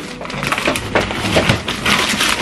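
Packaging crackling and rustling as a large gift box is handled, a dense run of small sharp crackles.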